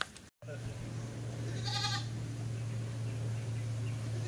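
A goat bleats once, briefly, about two seconds in, over a steady low hum.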